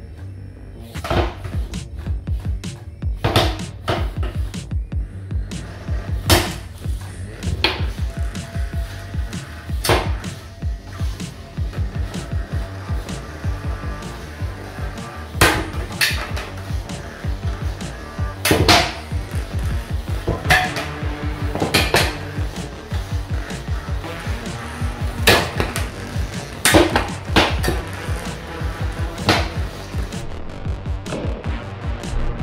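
Background music with a steady low beat, over which an antweight vertical spinner combat robot's weapon strikes a test block in the box, giving about a dozen sharp, irregularly spaced cracks.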